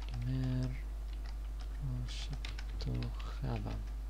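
Computer keyboard typing: a quick run of keystroke clicks as a word is typed out, over a steady low hum.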